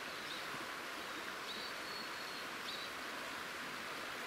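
Outdoor ambience: a steady soft hiss with a few faint, short bird chirps now and then.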